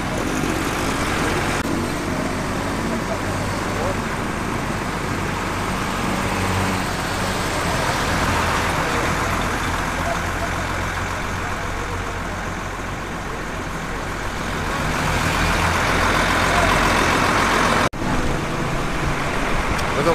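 Street traffic: motorbike and vehicle engines running, a steady low engine hum under a general roadway noise, with voices in the background. The sound breaks off for a moment near the end.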